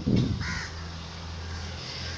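A short bird call, a single harsh note, about half a second in, over a steady low hum.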